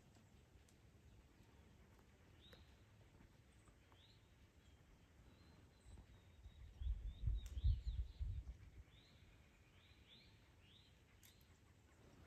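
Faint woodland birds chirping, with a run of short repeated calls in the second half. In the middle, a low rumble on the microphone swells for about two seconds.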